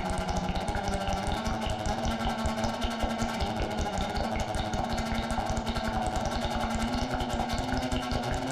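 Live-coded electronic music: a fast, even stream of rough pulses over a low held tone that steps up in pitch a couple of times.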